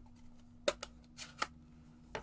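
Plastic stamp ink pad cases being handled and set down on a craft mat: a few light clicks and a soft scrape.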